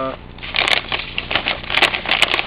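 A hand digging and scooping in a plastic bag of perlite: the light granules crunch and crackle in a quick, irregular run of small clicks.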